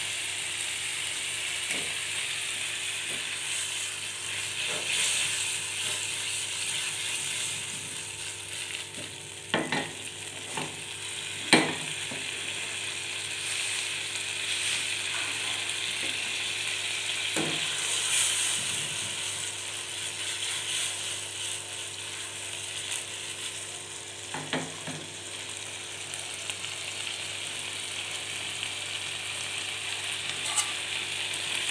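Squid pieces sizzling steadily in a little oil in a nonstick frying pan, with a few sharp knocks scattered through.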